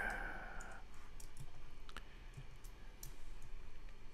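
Scattered light clicks of a computer mouse, a few a second at most. A faint steady tone is heard in the first second.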